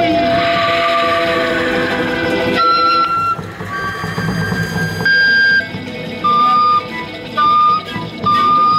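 Folk ensemble playing live with guitars and wind instruments. Held notes ring over the full group at first; about halfway the sound thins out, and a wind instrument plays a few long high notes with short breaks between them.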